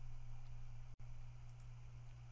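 Quiet steady low hum of background noise, briefly cut out just before halfway, with a couple of faint computer mouse clicks about a second and a half in.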